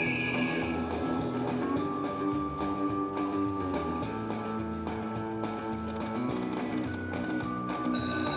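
Buffalo Link video slot machine playing its game music while the reels spin: held notes over a steady, repeating beat.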